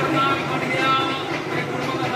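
A jaggery batasa-making machine running steadily as it drops jaggery onto its conveyor, with people's voices talking over it.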